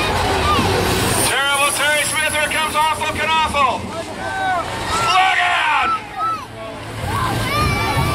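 School buses racing, their engines rumbling low at the start and again near the end, under a loud, fast, excited voice that rises and falls in pitch.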